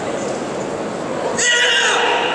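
Karate competitor's kiai during a kata: a sudden, loud, high-pitched shout about one and a half seconds in, falling slightly in pitch, over the steady murmur of an arena crowd.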